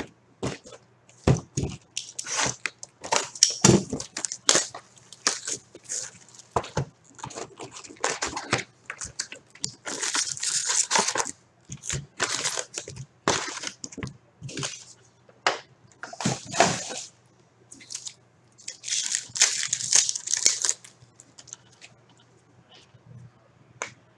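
Cardboard hobby box of 2016-17 SP Authentic hockey cards and its foil packs being handled: a string of sharp taps, scrapes and rustles as the box is opened and packs are pulled out, with longer crinkling rustles about ten seconds in and again near the end as foil card packs are torn open.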